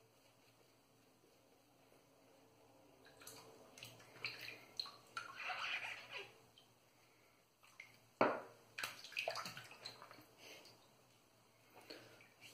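Water splashing and swishing at a bathroom sink during a wet shave, in two spells, with a single sharp knock about eight seconds in.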